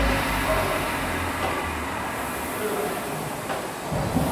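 Concept2 rowing machine's air-resistance flywheel whirring as an athlete rows.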